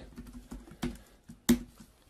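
Computer keyboard keystrokes: a few light key taps, then one sharper, louder key press about one and a half seconds in.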